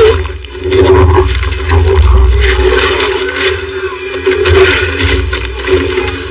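Loud film action sound effects: a deep rumble under repeated rushing, crashing noise bursts.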